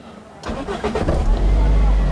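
Car engine being started with the ignition key: the starter cranks from about half a second in, and the engine catches and runs with a steady low rumble.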